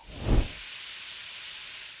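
A short low rumble, then an old steam radiator hissing steadily, as a cartoon sound effect.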